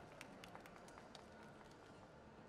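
Near silence: faint room tone with a few light, irregular clicks in the first second or so.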